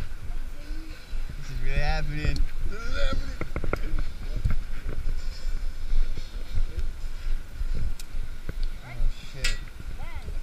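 Indistinct voices over a steady low wind rumble on the camera microphone, with a few sharp clicks.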